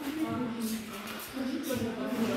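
Quiet, indistinct talking in a large gym hall, with a couple of soft knocks or steps.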